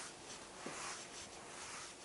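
Felt chalkboard eraser wiping across a chalkboard: a series of soft back-and-forth rubbing swishes.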